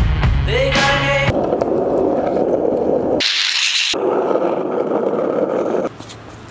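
Music with singing for about the first second, then skateboard wheels rolling on concrete, with a short high hiss a little past the middle.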